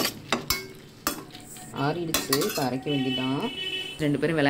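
Metal spatula knocking and scraping against an aluminium kadai while stirring sautéed tomatoes, shallots and dried red chillies, several sharp knocks in the first second or so. A person's voice follows in the second half.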